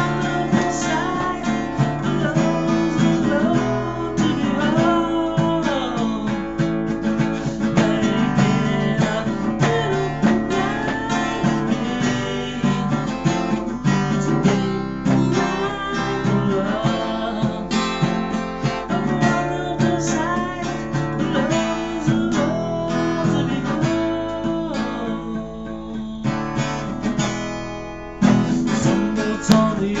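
A man singing while strumming an acoustic guitar. The playing thins out briefly near the end before a strong strum brings it back.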